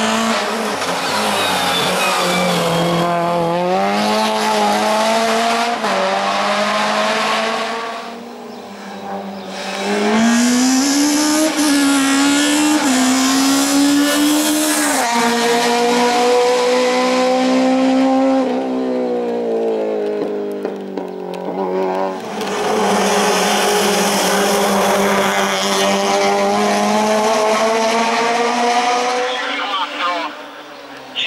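Peugeot 106 hill-climb race car's four-cylinder engine revving hard as the car climbs, its pitch rising through each gear and dropping at the shifts, with a brief lull about eight seconds in.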